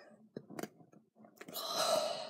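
A couple of light clicks, then a short scraping rustle about one and a half seconds in as a toothbrush is dug into a jar of peanut butter.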